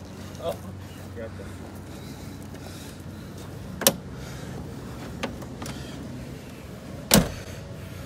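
Motorhome van side door being handled: a sharp knock a little before the middle and a louder thud near the end, over a steady low hum.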